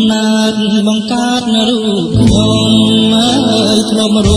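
Old Khmer pop song playing: a held, wavering melody line, with bass notes coming back in about halfway.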